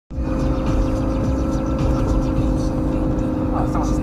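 Lamborghini Gallardo Spyder's V10 engine cruising at a steady speed, its engine note holding one even pitch, with wind and road rumble heard from inside the open-top cabin. A man starts speaking near the end.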